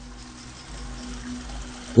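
A short pause in the speech: steady background noise with a faint low hum and a soft hiss.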